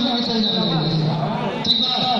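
A man talking into a microphone over a PA system. A steady high tone runs under the voice, and there is a brief click near the end.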